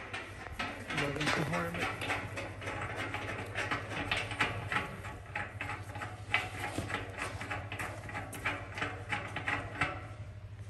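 A threaded steel levelling foot being screwed down by hand in the nut welded to a square steel tube leg. The metal threads make a quick, irregular run of small clicks and scrapes.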